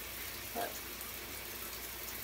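Steady hiss of running water in a small tiled shower, with a short spoken word about half a second in.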